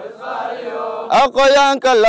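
Men's voices chanting in unison: a softer, ragged chant in the first half, then a loud, sustained chant on a steady pitch from about a second in.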